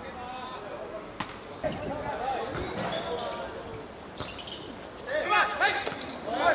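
Two sharp thuds of a football being played on the pitch, one about a second in and another about four seconds in, among players' distant shouts.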